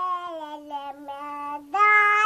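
A young girl singing unaccompanied: a long held note that sinks slowly in pitch, then a step up to a louder, higher note near the end.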